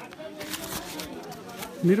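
Faint chatter of a waiting crowd with scattered rustling and handling noise close to the microphone. Just before the end a man starts speaking loudly close by.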